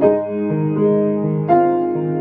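Solo grand piano playing a pop-song cover arrangement: sustained chords, with new chords struck right at the start and again about one and a half seconds in.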